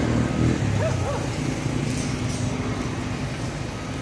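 A steady low engine hum from a running motor, with a dog barking twice about a second in.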